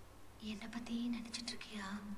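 A person speaking in a hushed, half-whispered voice, with a short run of soft words.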